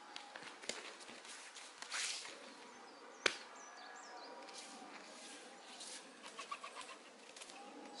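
Bare feet stepping and shuffling on foam training mats as two people move through an aikido technique, with one sharp slap on the mat a little after three seconds in. Faint birdsong in the background.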